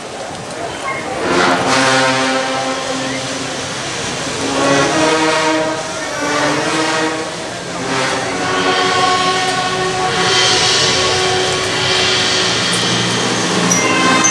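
Brass band playing a slow Guatemalan funeral march for a Holy Week procession, in long held chords that change every second or two.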